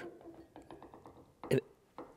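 A few faint, light metal clicks and taps as a pipe wrench is set onto the threaded ram of a bottle jack held in a vise, then a single spoken word near the end.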